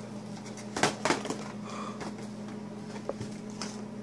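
Household objects being handled and set down: two sharp knocks about a second in, then a few lighter taps and rustles, over a steady low hum.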